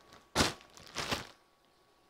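Plastic bag of celery crinkling as it is handled: a sharp rustle about half a second in, then a few softer ones around the one-second mark.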